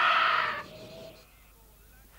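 A long held cry that carries over from a shout, fades out within the first second, and is followed by near silence.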